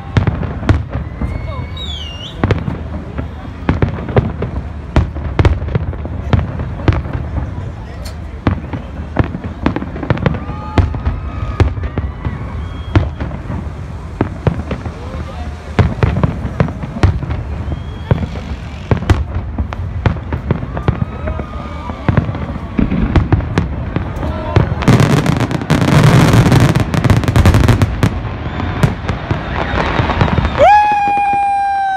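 Aerial fireworks display: a continual irregular series of sharp bangs and pops as shells burst overhead, with a brief whistle early on, building to a dense, loud stretch of rapid crackling near the end.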